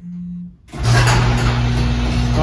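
Chamberlain garage door opener starting up about two-thirds of a second in, its motor running with a steady hum and rumble as the sectional door begins to roll open.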